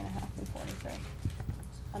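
Quiet meeting-room tone with faint voices and a few light knocks about a second and a half in.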